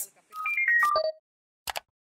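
Short electronic logo jingle: a quick run of bright, ringtone-like notes stepping down in pitch over about a second, followed by a single short click.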